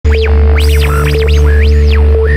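Loud intro music with a deep, steady bass under a held mid tone, and tones that sweep up and down in pitch several times.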